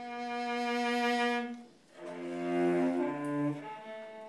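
Cello playing slow, long bowed notes, with a short break about two seconds in before the next phrase.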